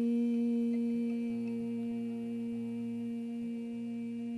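A singer's voice holding one long, steady hummed note during a mantra chant. Soft, low acoustic guitar notes come in underneath about a second in.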